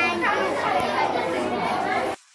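A young girl's voice speaking.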